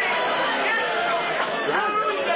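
Several voices talking over one another: a congregation calling out in agreement while a man preaches, on an old recording.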